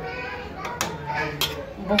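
Background chatter of children's voices, with two sharp clicks near the middle.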